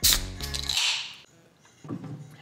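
Aluminium drink can cracked open by its pull tab: a sharp crack, then a fizzing hiss that fades out within about a second.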